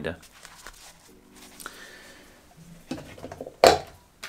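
Hands handling a Wolf watch winder and its padded watch cushion: a few quiet knocks, then a sharp clack shortly before the end.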